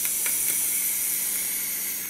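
Box-mod vaporizer being drawn on in one long, steady pull: the air rushing through the tank with the hiss and sizzle of the heated coil.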